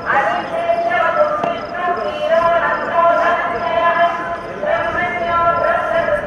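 A voice singing or chanting in long, held notes that glide in pitch, over a light, evenly spaced tick.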